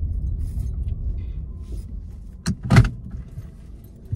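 Car cabin rumble from the engine and road, dying away gradually as the car slows. Two sharp clicks come close together about two and a half seconds in.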